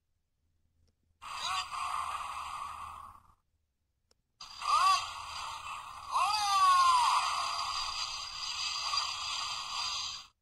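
Electronic sound effects playing from the Sevenger figure's built-in speaker, in two stretches, starting about one second and about four and a half seconds in. They have swooping pitch glides, one falling in pitch about six seconds in.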